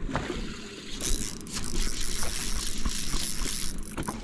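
A hooked bass splashing at the water's surface as it is reeled to the boat and lifted out, the splashing getting louder about a second in.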